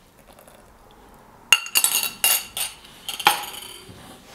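A thin liquid poured quietly into a plastic jug. From about a second and a half in come several sharp clinks of a small glass container, each with a brief ring, spread over about two seconds.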